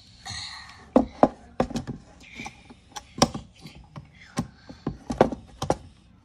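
A string of irregular sharp knocks and clicks as a Ryobi cordless drill and its bit are handled and knocked against a table frame's wood and metal bracket while the bit is lined up with a screw, after a short scuffing rustle at the start. The drill motor is not run.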